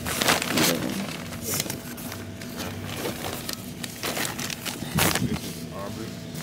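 Rustling, rubbing handling noise with scattered clicks, from the phone being pressed and shifted against a cloth car seat, with faint voices underneath.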